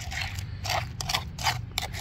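A plastic spoon scraping fish paste around the inside of a stone mortar, in about five short, quick strokes.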